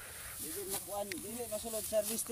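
A voice talking quietly in the background over the hissing rustle of ripe rice stalks brushed by people moving through the field.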